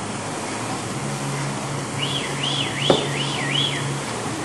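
A ski-training poling machine's flywheel whooshing steadily as the handles are pulled, under a low pulsing hum. About halfway through, a high alarm-like tone warbles up and down about twice a second for nearly two seconds, with a single sharp click near its end.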